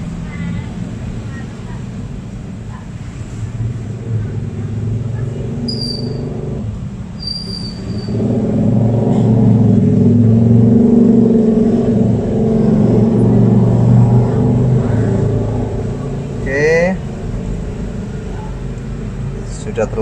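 Hot air rework gun set to 400 degrees blowing steadily onto a phone circuit board to desolder the RF IC: a low rushing hum of airflow that grows louder for several seconds in the middle.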